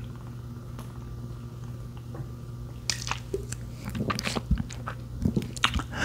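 Close-miked drinking from a can: after a quiet start, a run of gulps, swallows and wet mouth clicks comes in over the second half. A steady low hum lies underneath.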